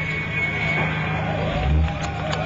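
Live band's amplified stage sound in a break after a song: a steady low amplifier hum, a high held tone that fades out about a second in, and a short low thump near the end.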